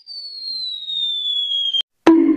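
Cartoon falling-whistle sound effect: one high whistle sliding slowly down in pitch. It is cut off near the end by a short sharp hit as a falling golf ball strikes a head.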